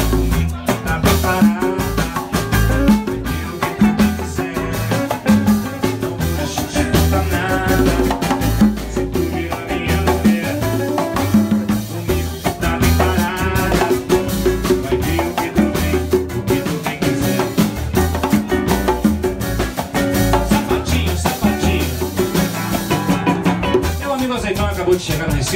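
Live bossa nova / sambalanço band playing: acoustic guitar, upright double bass and drum kit, with a steady deep bass line and regular drum beats.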